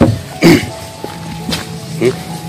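A man coughs, two short bursts within the first half-second, the second the louder, over background music with sustained tones.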